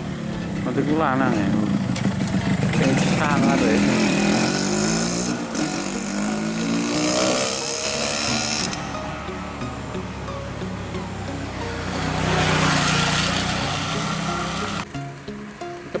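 Small motorcycle engine running as it rides slowly toward the microphone and past it. The noise is loudest in the middle, and the sound cuts off suddenly near the end. A voice calls "hai" a couple of times near the start.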